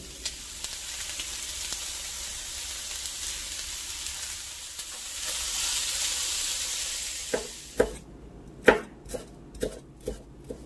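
Lamb liver strips sizzling in a hot pan while being stirred with a silicone spatula. The sizzle stops near the end and is followed by several sharp knocks of a knife chopping green bell pepper on a wooden cutting board.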